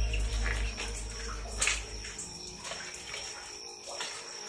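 Water dripping inside a rock cave: a few separate drops over faint background noise, one louder drop about a second and a half in.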